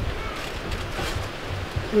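Wind rumbling on the microphone, a steady low buffeting.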